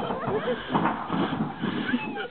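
Excited human voices: wordless shouts and laughter.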